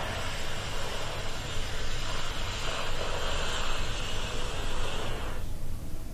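Several people drawing one long, deep breath in, a steady hiss that stops suddenly about five seconds in as they start holding their breath, over a low steady rumble.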